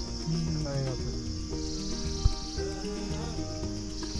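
Crickets chirping in a steady high-pitched drone that swells for about a second near the middle, over background music with held notes. A single sharp knock sounds about two and a quarter seconds in.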